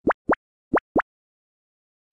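Cartoon sound effect: four quick rising 'bloop' plops, in two pairs, all within the first second.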